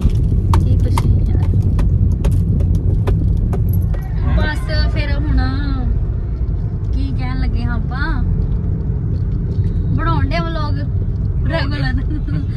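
Car cabin noise while driving: a steady low rumble of the engine and tyres runs throughout. Several sharp clicks sound in the first few seconds, and a person's voice comes in several short stretches from about four seconds on.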